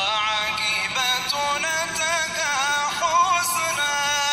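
A solo voice singing a slow, ornamented Arabic devotional melody, its notes bending and wavering from one to the next.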